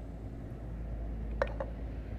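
A small clay teapot set back down on the tea tray: two light, sharp clicks of clay on the tray close together, over a steady low room hum.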